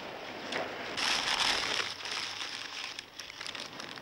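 Newspaper being unwrapped and crumpled by hands, rustling and crinkling, loudest from about a second in.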